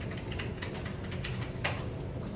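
Computer keyboard being typed on: quick, irregular key clicks, one louder stroke near the end, over a steady low room hum.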